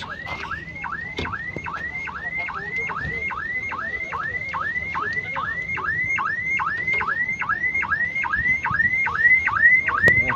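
A car alarm sounding, repeating a quick rising whoop about three times a second, growing a little louder near the end.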